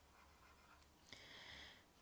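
Near silence, with a faint scratching of a stylus writing on a tablet screen in the second half.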